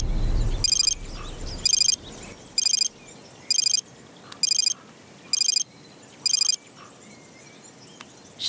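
Mobile phone ringtone: seven short, high, trilling rings about a second apart, which stop near the end. The film's background music fades out under the first two rings.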